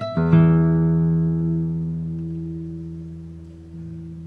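Classical nylon-string guitar by luthier Juan Carlos Medina: a chord struck about a quarter-second in, left to ring and fade slowly over about three seconds as the piece draws to its close. A soft note sounds near the end.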